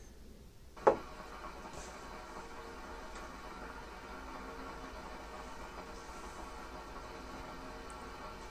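A sharp click about a second in, then a steady electric hum from the brewing kettle's heating element firing: the PID controller has switched it on because the water is one degree below the 40 °C set point.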